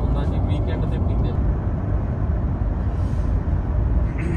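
Steady low rumble of tyre and engine noise inside the cabin of an SUV driving along a wet highway.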